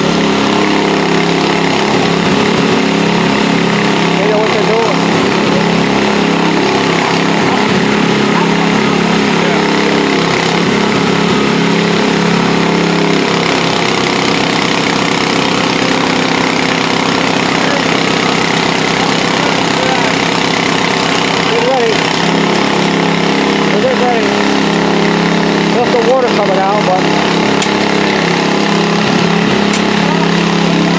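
An engine running steadily at a constant speed. Its note changes from about a third of the way in to roughly two-thirds through, then settles back. Faint voices come and go over it.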